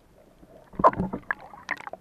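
Water splashing and gurgling around an underwater camera: short, irregular splashes and clicks, strongest about a second in and again near the end.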